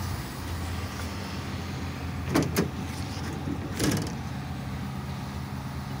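A Ford F-250's 6.7 L Power Stroke V8 diesel idling steadily. About two and a half seconds in come two sharp clicks, and about a second later a knock, as the tailgate is unlatched and lowered.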